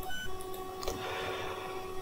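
Quiet room tone between spoken sentences: faint steady electrical tones, with a faint click about a second in.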